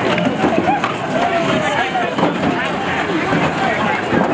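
A crowd of people's voices, loud and continuous, several shouting over one another at once.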